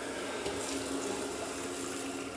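A thin stream of water pouring steadily into a stainless steel pot onto dry rice.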